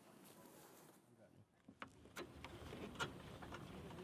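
Faint handling sounds: near silence at first, then from about halfway in a few light clicks and rustling as hands work a metal towing eye and a fabric tow strap at a car's front bumper.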